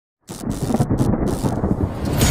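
A deep, thunder-like rumble, a sound effect of an animated video intro, that starts suddenly about a quarter second in and carries on unbroken.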